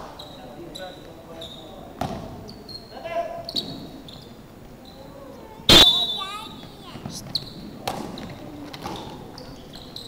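Basketball thudding on a wooden gym floor with echo, among players' voices and short high squeaks; a sharp, loud bang comes just before six seconds in.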